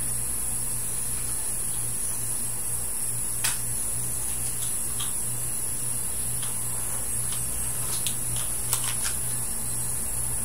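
Steady low electrical hum and hiss with a thin high whine, with a few faint, scattered clicks as hair rollers are handled.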